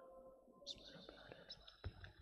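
Near silence of a congregation in prostration: faint whispering and rustling, with a soft click under a second in and a sharper knock just before the end.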